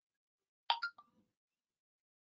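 A short electronic notification blip on the computer, two or three quick pitched pips close together, about two-thirds of a second in.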